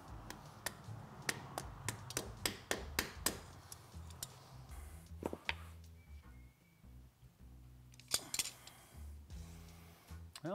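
A quick run of sharp taps over the first few seconds, one more around the middle and a pair near the end. A rubber mallet is tapping an oven-heated steel chain sprocket down onto a freezer-chilled hub for a shrink fit. Background music plays under it.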